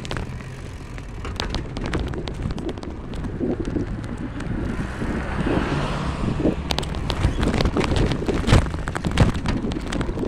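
Wind rumbling on the microphone of a moving vehicle, with frequent rattles and knocks from riding over the street pavement, getting busier in the second half.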